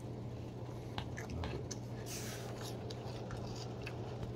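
A person chewing a mouthful of cereal in milk, with a few faint clicks of a spoon against a plastic bowl. A steady low hum runs underneath.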